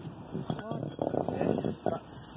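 A porcelain pylon insulator and the magnet on its metal end cap clinking and knocking on brick paving as it is dragged and turned over. The knocks come in a quick run, with a thin ringing after some of them.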